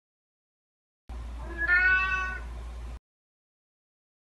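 A domestic cat meows once, a single drawn-out call about a second long, over a low steady hum. The sound cuts in and out abruptly.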